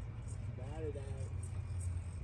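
A short vocal sound from a person's voice, under a second long, about half a second in, over a steady low rumble.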